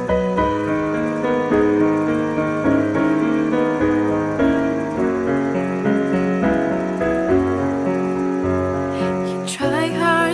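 Slow instrumental passage on piano or keyboard, playing held chords that change every second or so. A wavering melody line comes in near the end.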